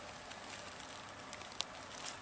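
Faint crackle and rustle of dry leaf litter as a small snake crawls through it, a few light ticks over a steady high hiss.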